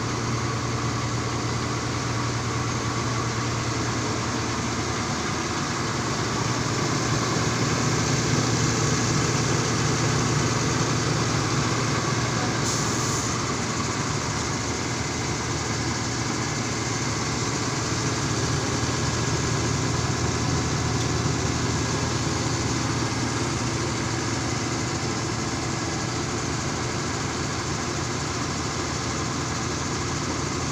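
A truck's engine idling steadily, a low, even hum that swells slightly for a few seconds in the middle, with a brief high hiss about thirteen seconds in.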